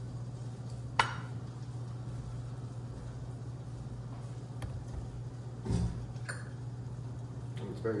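Table-top handling sounds as a plastic lemon juice squeeze bottle is used and set down: a sharp click about a second in, a fainter click later, then a knock and another click near six seconds, over a steady low hum.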